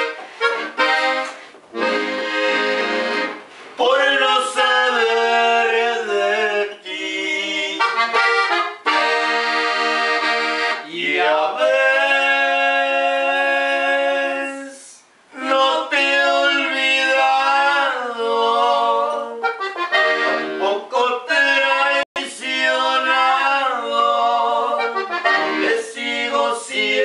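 Gabbanelli button accordion playing a solo instrumental norteño passage, sustained chords and quick melodic runs, with no singing. There is a brief pause in the playing about fifteen seconds in.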